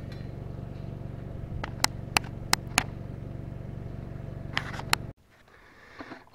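An engine running steadily at idle, with several sharp metallic clicks and taps over it. The engine sound cuts off suddenly about five seconds in.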